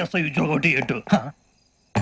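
A man's voice speaking in short phrases, which stops about a second in and gives way to a brief silence.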